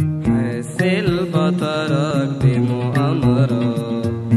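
Arabic Christian hymn music: a wavering, ornamented melody line over a sustained low accompaniment.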